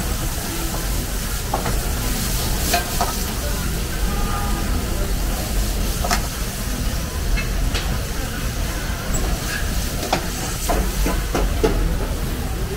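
Pasta and meat sizzling in woks over high-flame gas wok burners, with the burners' steady low roar underneath. A metal ladle clinks against the wok now and then, several times near the end.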